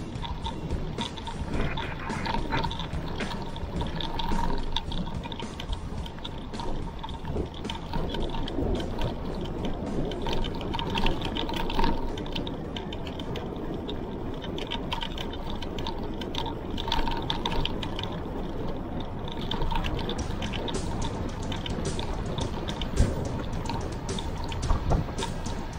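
Mountain bike being ridden, heard from its handlebars: steady tyre and road noise with frequent small clicks and rattles from the bike.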